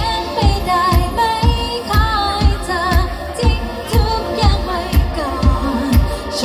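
A woman singing a Thai pop song live into a microphone, with wavering held notes, over pop accompaniment with a steady kick drum at about two beats a second.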